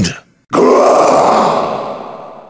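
A loud, growling roar sound effect that starts abruptly about half a second in and slowly fades away.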